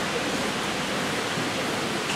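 A steady, even hiss with no other events, unchanging throughout.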